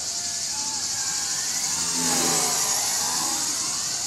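WLToys V333 Cyclone II quadcopter's electric motors whining in flight, the pitch wavering up and down as it yaws at its faster 80% rate. A lower hum swells and fades in the middle, over a steady high insect buzz.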